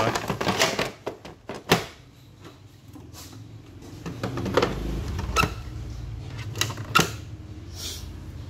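Plastic parts of a Daikin MCK70 air purifier-humidifier clicking and knocking as the humidifying tray is pushed back in and the side panel is snapped shut. There is a cluster of clicks at the start, a sharp click just under two seconds in, and a few more sharp clicks in the second half.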